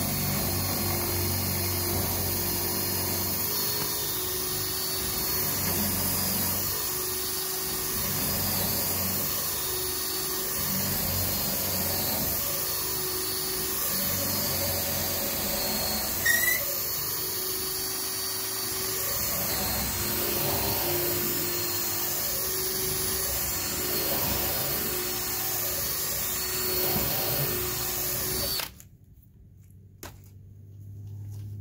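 A cordless drill runs steadily, boring a long bit through stacked treated deck boards. There is a brief high squeak about halfway through, and the drill stops shortly before the end.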